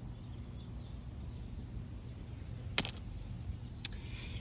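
Two sharp clicks of stones knocking together, the louder one a little before three seconds in and a fainter one about a second later, over steady low outdoor background noise.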